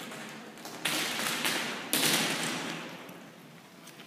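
Two sharp impacts about a second apart, each echoing and dying away in the large hall.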